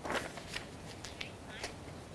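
Sporadic gunfire heard from a distance: one sharp crack just after the start, then several fainter cracks at irregular spacing.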